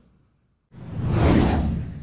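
Whoosh sound effect of an animated logo reveal. It comes in sharply after a brief silence about three-quarters of a second in, then fades away over the next second.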